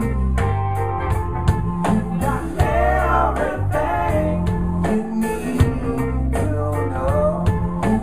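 Live rock band playing a song: electric guitars, bass and drum kit with a steady beat, and a man singing two sung lines over them.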